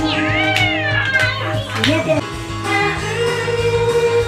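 Two women singing karaoke into microphones over a pop backing track. In the first second or so a high voice slides up and then down.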